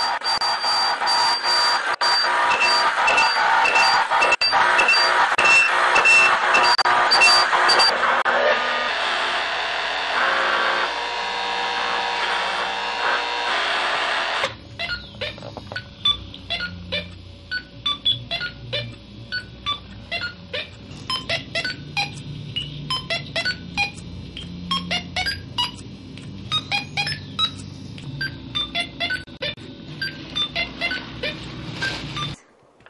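Experimental noise from homemade electronic sound devices. For about the first half a dense buzzing layer runs under a string of evenly repeated high beeps. About halfway through it cuts off abruptly to sparse, quieter clicks and short chirping blips.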